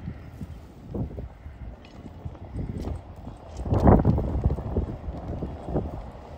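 Wind buffeting the phone's microphone in an uneven low rumble, with a strong gust about four seconds in and a few knocks. Under it, a pickup truck is approaching on the snow-covered street.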